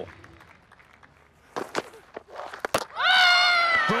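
A cricketer's loud, high-pitched shout of appeal as a wicket falls, held about a second and slowly falling in pitch, about three seconds in; a sharp knock comes just before it.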